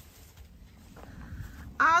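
A quiet pause with only faint background noise, then a woman begins speaking near the end.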